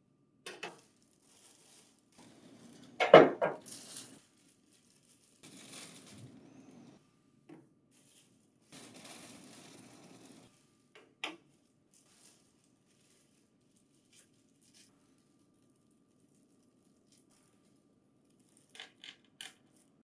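Plastic packaging rustling and hard plastic accessory parts knocking on a table as they are unpacked, with the loudest knock about three seconds in and a few light clicks near the end.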